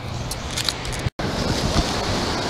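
Steady wash of ocean surf and wind noise. About a second in the sound cuts out for an instant, with a few faint clicks just before.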